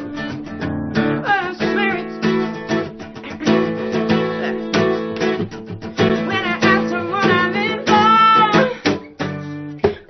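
Acoustic guitar played steadily, with picked notes and strummed chords.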